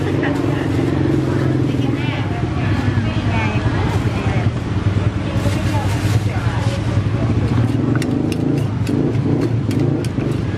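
Street ambience: a steady low engine rumble of traffic with voices talking, and a run of sharp knocks near the end from the wooden pestle in the clay mortar.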